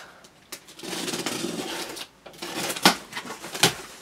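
Packing tape on a cardboard box being split with a pen tip, a scratchy tearing that runs about a second. Then the cardboard flaps are pulled open, with rustling and two sharp knocks near the end.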